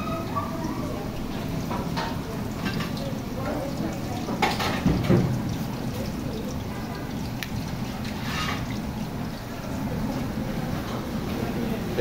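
Plantain pieces for patacones deep-frying in a wide aluminium pan of hot oil, the oil bubbling and sizzling steadily, with a brief louder burst of kitchen noise about five seconds in.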